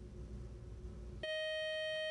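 Faint studio room hum, then about a second in a steady electronic buzzer tone that holds for about a second: the quiz timer signalling that time is up with no answer given.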